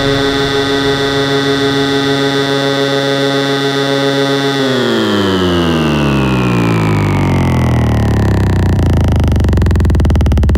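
Electronic dance music breakdown: a sustained synthesizer chord holds steady for about four and a half seconds, then the whole chord slides steadily down in pitch, with no drums.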